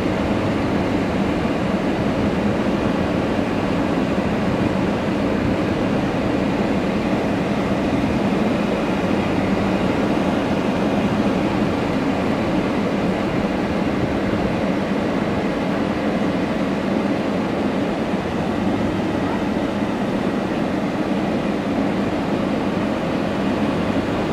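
Steady running noise of a car driven slowly, heard from inside: engine and tyre noise with no change through the stretch.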